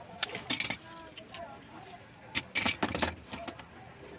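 A series of sharp clicks and clinks from tools and materials being handled on a florist's work counter, with faint voices in the background.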